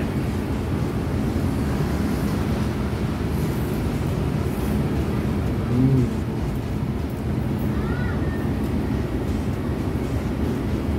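A steady low rumble and hum run throughout, with a short low murmur as noodles are slurped about six seconds in.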